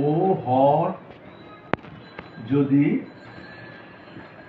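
A man's voice speaking in two short stretches, with one sharp click about halfway through.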